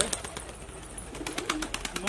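Pigeons in the background, with some cooing and scattered faint clicks.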